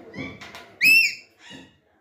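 Alexandrine parakeet chicks giving high-pitched begging calls as they are fed from a syringe; the loudest call, rising and then falling, comes about a second in. Beneath the calls a soft low pulse repeats about every two-thirds of a second.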